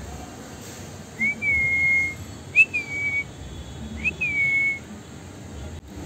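Three short whistled notes, each sliding quickly up and then holding steady for just under a second, with about a second between them.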